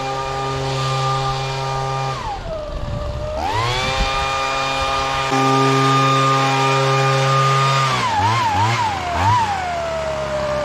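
Ryobi two-stroke handheld leaf blower running at high throttle. About two seconds in it drops to idle for a second, then revs back up and holds. It gives a few quick throttle blips near the end before easing back toward idle.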